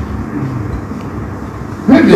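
A steady low rumble of background noise with no clear event in it.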